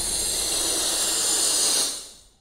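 Logo-intro sound effect: a steady, bright rushing noise that fades out near the end.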